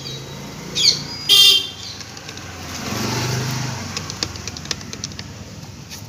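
Street traffic: two short shrill toots in the first second and a half, then a passing vehicle's engine swelling and fading around the middle. Light sharp clicks follow as a hand lever grease gun is worked against an auto-rickshaw's front wheel hub.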